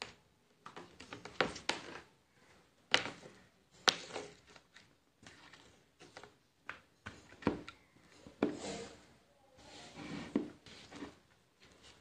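Scattered light clicks, taps and knocks from handling a plastic artificial flower-tree decoration and its box base while a braided charging cable is plugged into it, with brief rustles in between.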